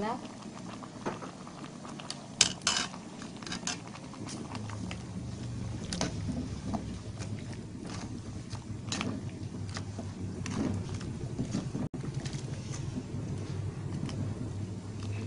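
A metal spoon stirring sugar into rambutan in a metal pot, knocking and scraping against the pot now and then. The loudest clinks come about two and a half seconds in. A low steady hum starts about four seconds in.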